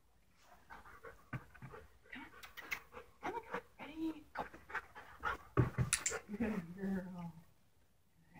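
A dog panting while it moves, with a run of quick clicks and knocks; the loudest knock comes about five and a half seconds in.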